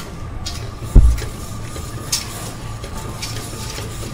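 Steady hum of a kitchen extractor fan, with a few light clicks of a metal whisk and plate lid against a steel pot, and one dull low thump about a second in.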